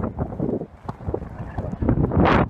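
Strong wind buffeting the phone's microphone, an uneven low rumble that surges and drops with the gusts.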